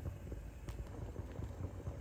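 Basmati rice boiling hard in a pot of spiced water, at the stage where it is most of the way cooked for biryani: a low, steady bubbling with many small irregular pops.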